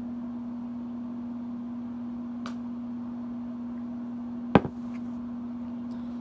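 A steady low electrical hum, with a faint tick about two and a half seconds in and a single sharp knock about four and a half seconds in, the loudest sound.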